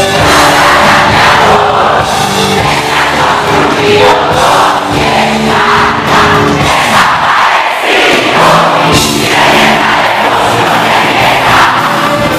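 Live rock band playing loud, with a sung lead vocal and the crowd shouting and singing along. The low end drops out briefly about seven seconds in, then the full band comes back in.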